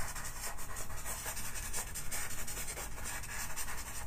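Faber-Castell Pitt pastel pencil scratching across paper in quick, repeated short strokes as colour is hatched into a background.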